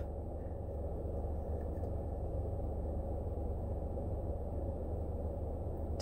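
Steady low rumble and hum inside a car's cabin, with nothing else happening.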